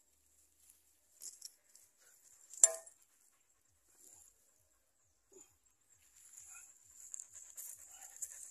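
Soft crumbling and scraping of loose soil as it is pressed by hand around a newly planted banana sucker, with one sharp tap about two and a half seconds in. Near the end a dog's panting comes in close and grows louder.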